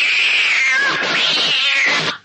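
A long, loud cat-like screech, the battle cry of the cat's claw kung fu style. Its pitch slides down, climbs again about a second in, then falls before it cuts off suddenly.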